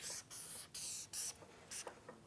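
Felt-tip marker drawing on flip-chart paper: about five short, scratchy strokes in quick succession as an arrow is drawn.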